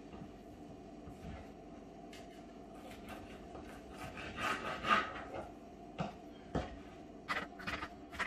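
Kitchen knife working raw fish fillets on a wooden cutting board: a rasping scrape about halfway through, two knocks of the blade on the board, then quick light taps near the end.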